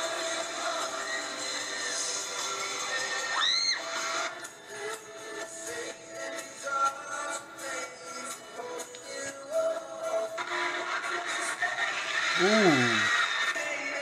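Live pop concert audio: band music and singing with a dense crowd-like haze under it. The haze is fullest in the first few seconds and again in the last few, with a sparser musical stretch between.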